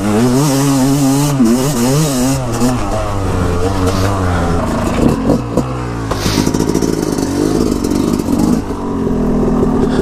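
Yamaha dirt bike engine on the trail, the revs rising and falling with the throttle for the first six seconds. It then settles to a lower, steady pulsing run at light throttle as the bike slows.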